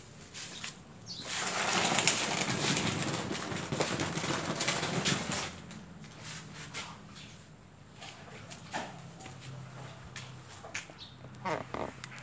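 Rustling and scraping from a black plastic pot full of soil, with a rubber plant cutting in it, being moved across a concrete floor. The noise lasts about four seconds and is followed by a few faint knocks and clicks.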